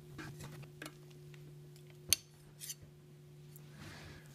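Whitney No. 16 hand punch clicking as it punches a hole through a thin brass hinge strip: one sharp click about two seconds in, with a few lighter clicks of metal handling around it, over a faint steady hum.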